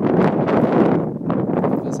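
Wind buffeting the microphone: a loud, uneven rumbling rush, easing briefly a little past the middle.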